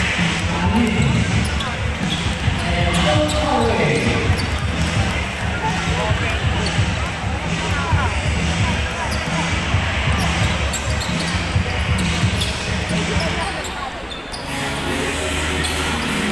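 A basketball being dribbled and bounced on a hardwood court, over a steady din of crowd voices and shouts in a large arena.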